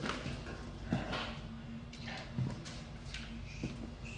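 Slow footsteps on a hard corridor floor, three soft steps about a second and a half apart with some scuffing, over a low steady hum.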